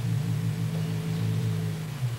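A low, steady droning hum with a fainter, thin higher tone above it, played from a stakeout videotape's soundtrack.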